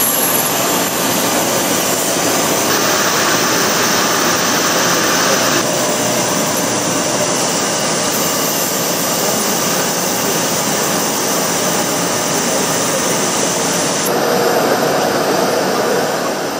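Jet airliner's engines running on the ground, a loud steady rushing noise. Its tone shifts abruptly about three seconds in, near six seconds, and again near the end.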